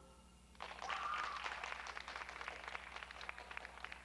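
Audience applauding: a dense spatter of hand claps that starts about half a second in and thins out toward the end.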